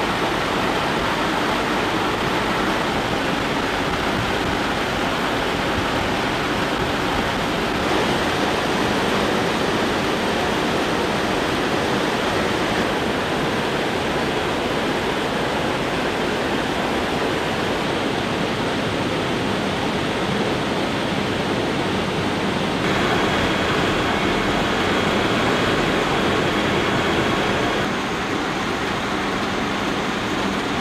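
Steady engine, rotor and wind noise inside a military helicopter cabin with the door open. The noise shifts slightly a few times, and a low steady hum joins in about two-thirds of the way through.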